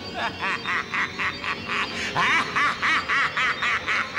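A cartoon character's laughter: a rapid run of short 'ha-ha' pulses, about five a second, breaking off briefly about two seconds in and then starting again.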